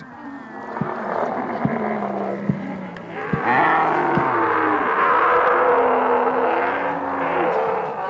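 A herd of dromedary camels bellowing, many voices overlapping in a continuous chorus that grows louder about three seconds in.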